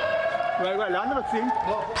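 A rocket-warning siren wailing, its tone rising slowly in pitch, with people's voices beneath it.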